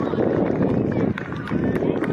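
Indistinct voices of players and spectators on an outdoor soccer field, no clear words, over a steady loud rumble of background noise that dips briefly about a second in.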